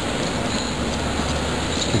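Steady city street noise with a low, even hum running under it.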